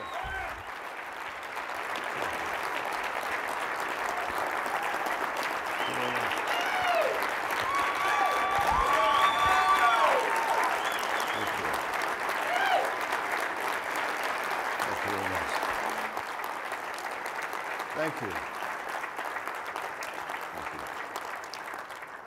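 A large audience applauding at length. The clapping builds to its loudest about ten seconds in and then slowly tapers off, with scattered cheering voices over it.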